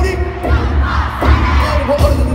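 An arena crowd shouting along over loud live pop music with a heavy bass beat, heard from among the audience.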